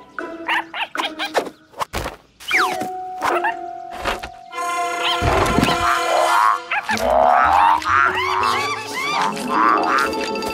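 Cartoon soundtrack music with a string of knocks and a heavy thud about five seconds in. Then a rush of squeaky, arching cartoon animal calls as a swarm of frogs hops about.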